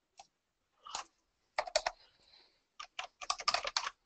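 Typing on a computer keyboard: a few single keystrokes, then a quick run of key presses in the second half as a web address is typed in.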